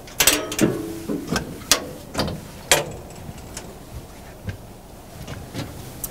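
Engine compartment side door of a Komatsu WA600-8 wheel loader being unlatched and swung open: a string of metallic clicks and clunks, the loudest about a third of a second in and again near three seconds, with a brief creak about half a second in.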